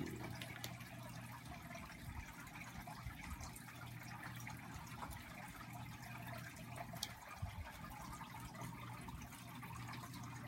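Faint, steady background hiss with a low hum and a few small clicks.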